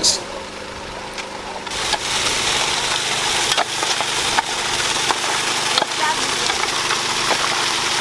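Small engine-driven water pump running steadily while its hose jet sprays water onto muddy gravel in an artisanal mining sluice; the loud hiss of the spray comes in about two seconds in, with a few sharp clicks.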